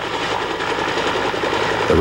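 Helicopter hovering low, its rotor running steadily.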